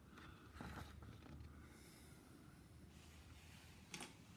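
Near silence: room tone with a low steady hum, and a faint rustle about half a second in as a paper sheet on the chart easel is turned over.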